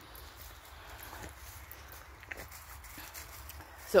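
A few faint scuffs and light knocks on a dirt path as a small dog picks up a long stick in its mouth.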